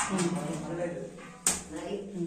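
People's voices talking, with one sharp click or knock about one and a half seconds in.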